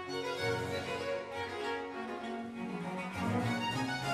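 Background music of bowed strings, violin and cello, playing sustained notes that change about every half second.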